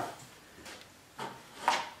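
Hands handling the metal parts of a tap-grinding relief attachment: a few short knocks and clunks, the loudest two about a second apart near the end.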